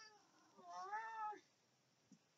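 Domestic cat meowing twice: a short meow at the start, then a longer meow about half a second in whose pitch bends up and down.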